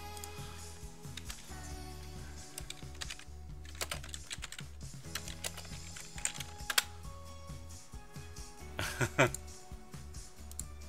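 Scattered clicks of typing on a computer keyboard over background music, with a short laugh near the end.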